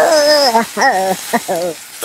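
A high-pitched voice making short wordless sounds: four bursts that glide downward in pitch, the first and longest lasting about half a second.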